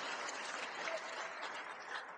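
Congregation applauding: a steady patter of many hands clapping that thins toward the end.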